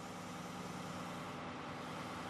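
Volvo crawler excavator's diesel engine and hydraulics running steadily at low revs, an even low hum with a steady tone, as the hydraulic quick fit locks onto the attachment.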